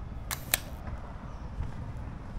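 Olympus E-500 digital SLR taking a photo: its mirror and shutter give two sharp clicks about a quarter second apart.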